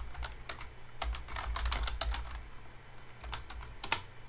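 Computer keyboard being typed on: a quick, irregular run of key clicks as a long command is entered.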